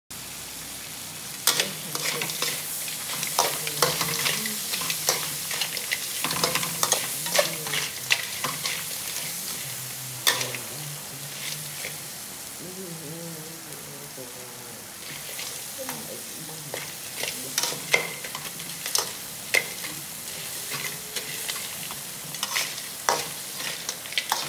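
Small crabs frying in a large pan with a steady sizzle, broken by frequent sharp scrapes and knocks as a metal spatula stirs and turns them against the pan.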